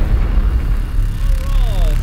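Ram Power Wagon's HEMI V8 engine running at low revs as the truck crawls over rock towing a camper trailer, a steady low rumble. A person's voice comes in about a second in.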